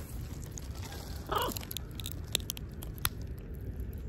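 Macaws' beaks cracking and crunching walnut and almond pieces: scattered sharp clicks and crunches. There is one short vocal sound about a second and a half in.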